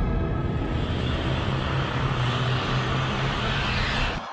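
Horror-trailer sound design: a loud, dense rumbling roar that grows brighter and fuller toward the end.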